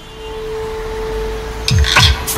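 Opening of an outro music jingle: a single held note swells in, then sharp hits and falling bass swoops start near the end.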